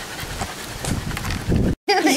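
A cocker spaniel climbing into a shallow plastic wading pool, its paws knocking on the plastic and sloshing the water, with a heavier thump about a second and a half in.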